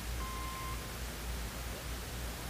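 Steady hiss with a low hum, the background noise of the recording between narrated lines. A short, faint beep at a single pitch sounds about a quarter second in and lasts about half a second.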